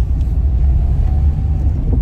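Steady low rumble of a car in motion heard from inside the cabin: engine and road noise.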